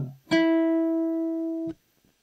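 A single note plucked on an acoustic guitar: the E an octave above the root of an E minor chord shape, played on its own. It rings steadily for about a second and a half and is then cut off abruptly.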